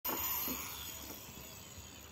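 Handheld angle grinder winding down after a cut through a fibre-cement corrugated roof tile: its high whine falls in pitch and fades over the first second or so.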